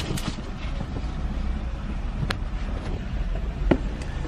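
Car engine idling, heard from inside the cabin as a steady low rumble, with three sharp clicks: one right at the start, one a little past two seconds in, and one near the end.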